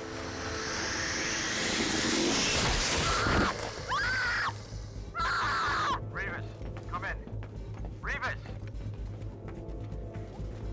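Film sound design for a sea monster: a rush of noise swells to its loudest about three seconds in. It is followed by creature-like calls, two long arching ones around four and five seconds in and shorter ones after, over a low steady drone from the score.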